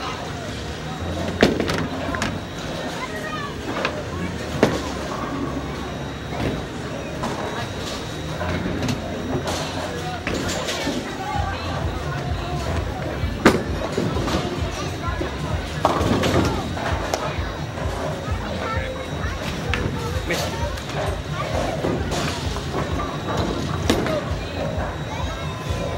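Bowling alley din: background music and chatter over a steady low rumble of balls rolling down the lanes, broken by a few sharp knocks of balls and pins, the loudest a little past the middle.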